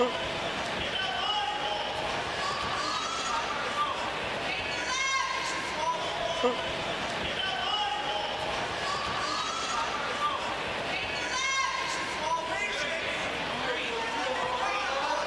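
Boxing-hall ambience during a round: a steady murmur of spectators with scattered shouted voices, and a few short sharp impacts from the fighters' exchange in the ring.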